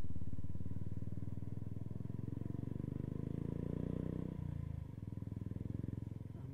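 Motorcycle engine running at low speed on a rough dirt track with an even, pulsing beat. The engine note swells a little, then drops off sharply about four and a half seconds in.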